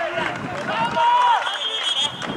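Footballers shouting and calling to each other on the pitch, one long drawn-out call the loudest about a second in. A short, high, steady whistle sounds near the end.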